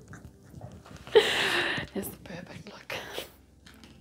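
A woman's breathy, whispered laughing, with a loud breathy burst about a second in, and a few light clicks of tarot cards being handled.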